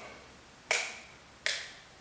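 Two sharp snaps or clicks, about three quarters of a second apart, each followed by a brief ring-out.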